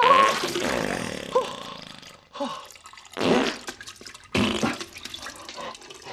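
A man's strained, pitched cry trailing off at the start, then wet farting and splashing into a toilet bowl in several separate bursts.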